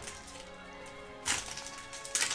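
Soft background music, with a brief crinkling rip of a foil trading-card booster-pack wrapper being torn open a little past a second in.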